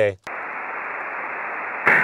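Amateur HF transceiver receiving between overs: a steady hiss of band noise, cut off above the voice range, as the operator unkeys. Near the end the other station's voice comes back in over the same hiss.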